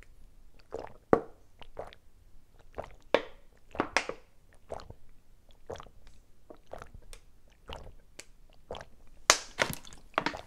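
Close-miked gulping and swallowing of water from a plastic bottle: a string of irregular wet gulps and mouth clicks, with a few louder, sharper sounds near the end.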